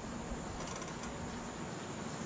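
Steady, faint outdoor background noise: an even hiss with no distinct event in it.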